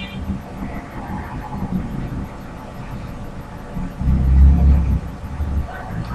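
Low background rumble during a pause in speech, swelling louder for about a second around four seconds in.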